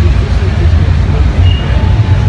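A loud, steady low rumble of outdoor background noise on a phone microphone, with faint distant voices.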